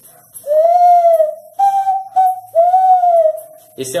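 Handmade wooden zabelê bird call (pio) blown by mouth, giving three long, low whistled notes that imitate the zabelê tinamou. The first and last notes rise and fall slightly, and the middle one is held level and a little higher.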